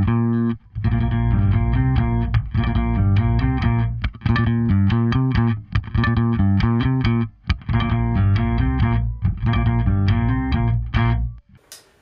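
Electric bass played through a TC Electronic Sub 'N' Up octave pedal: a riff of held notes with added octaves that give a synthy, organ-like tone, broken by a few short gaps. The playing stops shortly before the end.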